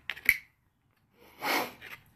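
A short breathy snort through the nose about one and a half seconds in, after a light click near the start.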